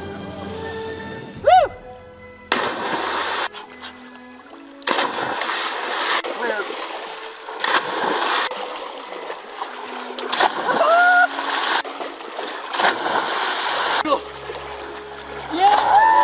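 People jumping feet- or body-first into a lake, one after another: about five loud splashes spaced a couple of seconds apart, with short shouts and whoops between them, over background music.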